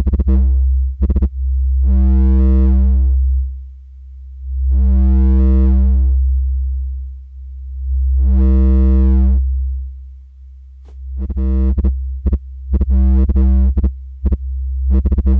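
A deep, steady synth bass tone running through Ableton's Roar saturation effect. A brighter, distorted layer swells in and out about every three seconds, then chops into short, quick pulses near the end. An LFO is modulating the shaper's level, and a second LFO is changing that LFO's rate.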